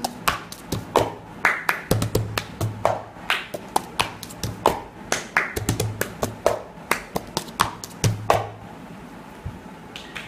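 Cup song rhythm played without singing: hand claps, taps and a white disposable cup knocked and set down on a tabletop in a quick repeating pattern, stopping about eight and a half seconds in.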